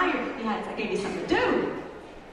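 A woman talking into a microphone over a hall's sound system, with no music behind her.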